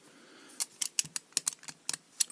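FB 11 four-lever padlock being handled and turned over in the hands: an irregular run of about ten sharp metallic clicks and taps, starting about half a second in.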